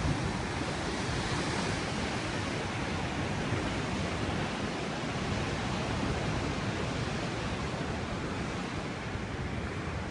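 Steady, even rush of heavy surf breaking against the foot of a sea cliff, mixed with wind.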